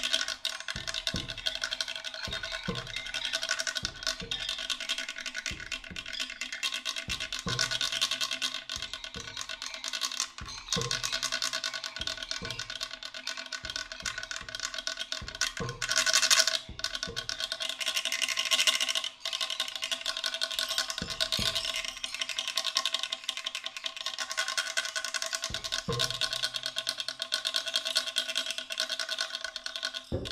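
Live experimental percussion music: a fast, dense scratching and rattling texture over a few steady held tones, punctuated by irregular low knocks, with a louder surge about 16 seconds in.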